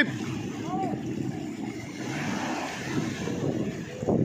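Motorboat engine running steadily under wind on the microphone, with a short shout about a second in.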